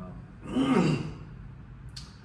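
A man's audible sigh about half a second in, a breathy voiced exhale falling in pitch, followed by a brief click near the end.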